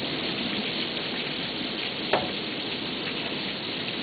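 Heavy rain falling steadily, a dense even hiss, with one brief short sound about two seconds in.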